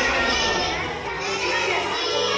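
Several children's voices calling and chattering in a large hall, over background music.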